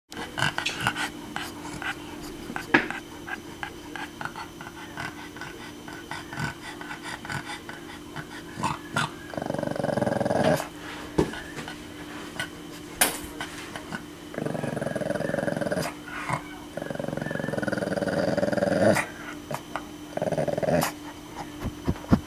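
Pug growling at the photo of another dog on a computer screen: several drawn-out growls of a second or two each in the second half, with short clicks and ticks before them.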